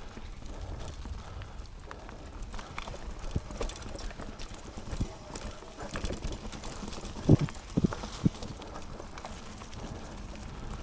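A Chromag Stylus steel hardtail mountain bike rolling fast down a dirt singletrack: tyre rumble on the dirt and leaves, with the bike clattering and clicking over the bumps. Three heavy thumps come in quick succession about seven to eight seconds in as the wheels strike bumps in the trail.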